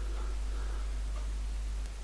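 Steady low hum with one faint click near the end, from small pieces of silver solder being set into the cracked bore of a steel speedometer gear.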